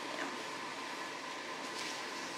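Steady indoor room noise from air conditioning: an even hiss with a faint steady hum.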